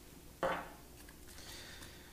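One sharp knock, then a short, softer scraping rustle: a stepper motor and hands being handled in a 3D-printer kit's foam packaging.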